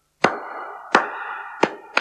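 A man clapping his hands in a slow steady rhythm, about one clap every 0.7 seconds. Each clap is followed by a ringing tone that carries on until the next.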